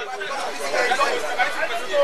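Background chatter of several people talking at once in a street crowd, steady and without one clear voice.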